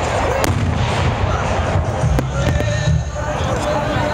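Fireworks going off in a few sharp bangs, the clearest about half a second in and just after two seconds, over loud music from the display's soundtrack.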